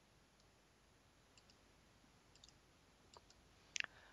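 Near silence: faint room tone with a few faint clicks in the second half, the sharpest just before the end.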